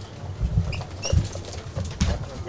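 Handling noise from equipment on a studio table being moved: dull knocks and bumps, twice loudest about half a second and just over a second in, with a few short high squeaks.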